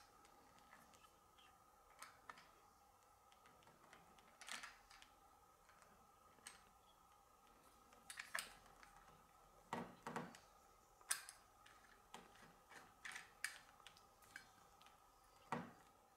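Near silence with scattered faint metallic clicks and taps as steel washers and a nut are fitted onto a saw arbor by hand, over a faint steady hum.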